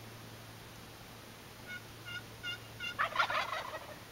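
Four short, evenly spaced turkey yelps, then a wild turkey gobbler gobbling about three seconds in, the loudest sound of the stretch.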